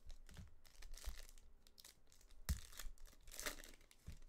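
Foil trading-card pack being torn open by hand, the wrapper crinkling and crackling, with a sharp rip about two and a half seconds in.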